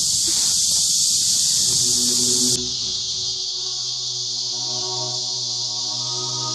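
A steady, high-pitched insect chorus, which drops in level about two and a half seconds in as background music of long, sustained notes fades in.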